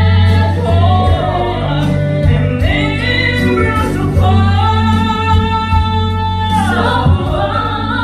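A woman and a man singing a musical-theatre duet through handheld microphones, taking turns and together, over amplified accompaniment with a steady bass. The singing holds long notes that waver in pitch.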